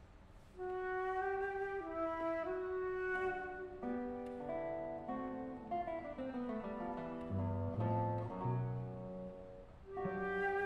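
Chamber trio of flute, guitar and cello playing, starting about half a second in: held melody notes over a line that steps downward, with deep cello notes a little past the middle.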